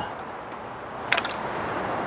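Cordless impact driver starting up about a second in and running as it backs out an already-loosened T30 thermostat-housing bolt, over a steady hiss of heavy rain.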